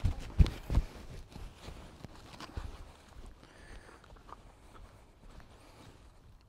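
Footsteps on grass and clothing rustle from a person walking with a dog at heel. There are three dull thumps in the first second, then fainter, irregular soft steps.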